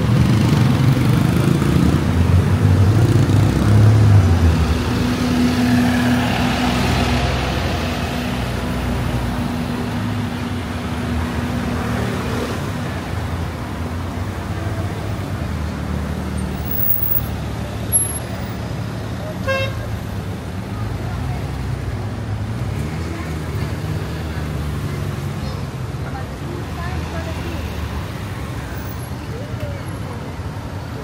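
City street traffic: motorcycle and car engines passing close by, loudest in the first few seconds, then a steady traffic hum. A short horn beep sounds about two-thirds of the way through.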